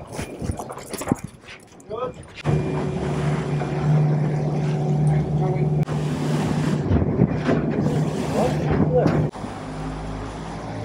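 Outboard motors of a rescue boat running steadily under way, a low even drone with water rushing past the hull. It comes in suddenly about two and a half seconds in, after a few knocks from rope handling, and cuts off abruptly near the end.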